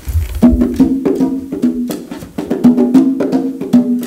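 Conga drums played by hand: a quick, repeating rhythm of ringing drum strokes, starting about half a second in, played as one part of a three-drum conga pattern.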